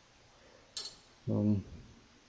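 A single short metallic clink as the steel cocking lever of an air rifle is handled, followed about half a second later by a brief hesitation sound from a man's voice.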